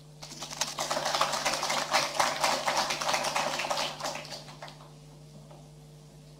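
A small audience applauding, a dense patter of claps that dies away after about four seconds.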